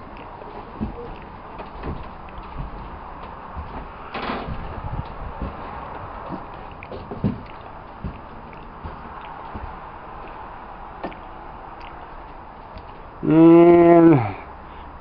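Light scattered knocks, clicks and rustling from a handheld camera being carried around a workshop, over a steady low hiss. Near the end a man's voice sounds one held syllable.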